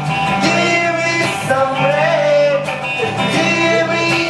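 Live amplified music: a man singing through a handheld microphone with guitar accompaniment, the voice rising and falling over sustained chords.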